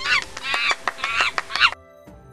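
Monkey calls: a quick series of high, wavering cries in about four bursts that cut off sharply near the end, over soft background music.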